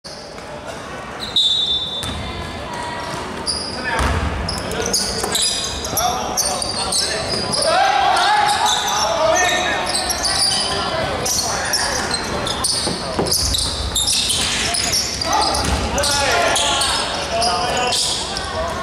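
Basketball bouncing on a wooden court during play, with players' voices calling out, echoing in a large hall.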